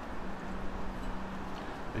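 Wind, rain and traffic heard through a shotgun microphone's furry windshield: a steady hiss and low rumble, with a faint steady low hum through most of it.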